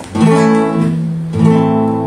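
Acoustic guitar strumming the opening chords of a tango: two chords struck about a second apart, each left to ring.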